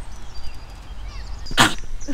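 Wind rumbling on the microphone with faint birdsong, broken near the end by one short, loud puff of noise.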